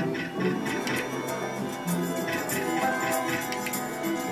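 Merkur El Torero slot machine's free-spin game music playing, with a run of quick clicks as the reels spin and stop.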